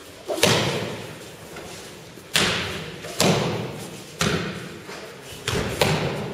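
Aikido practitioners thrown onto tatami mats, landing in breakfalls: about six heavy thuds roughly a second apart. Each thud rings briefly in the large hall.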